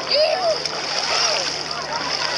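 Water splashing in shallow seawater as people move and play in it, with a background of bathers' voices.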